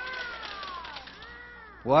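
Children's voices calling out in high, falling and arching tones, then a man's loud rising exclamation near the end.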